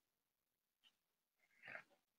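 Near silence, with one faint, brief sound near the end.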